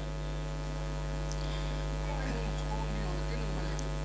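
Steady low electrical mains hum from the microphone and sound system, unchanging throughout.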